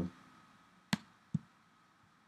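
Two computer mouse clicks about half a second apart, the first sharper and louder.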